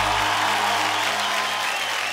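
Applause from many people clapping, a steady patter, over the fading last notes of the song's backing music.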